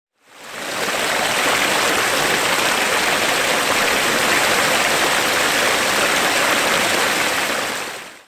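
Water pouring over a low rock ledge into a creek: a steady rushing that fades in over the first second and fades out at the end.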